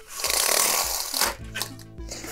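An edited whoosh sound effect lasting about a second, followed by background music with steady held low notes.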